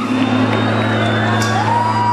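Live vallenato band music from the stage sound system, over a steady bass note, with a long held high note rising in about a second and a half in.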